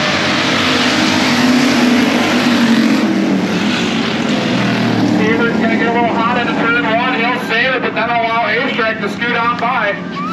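Pack of dirt-track race cars running past at speed, loudest in the first few seconds and easing off after about halfway. A race announcer's voice over the loudspeakers then comes up over the more distant engines.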